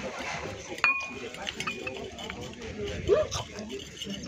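Outdoor table ambience with murmuring voices and a sharp clink of tableware about a second in, followed by a fainter ring. Just after three seconds comes a short rising cry.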